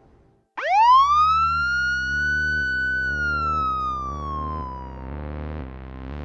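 A single siren wail that rises sharply, holds, and slowly falls away, loudest as it first rises, over a low bass beat pulsing about two and a half times a second as the closing theme music begins.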